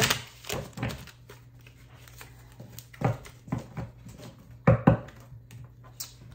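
Tarot deck being shuffled and cut by hand: scattered soft card taps and slaps, with sharper taps about three seconds in and a close pair near the five-second mark.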